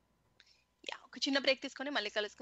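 A person's voice speaking over a call line, starting about a second in after a short silence.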